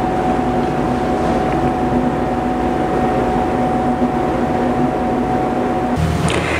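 Steady machine hum with a constant, even whine above it, from equipment running in a laboratory room; it does not change, then stops abruptly at the end.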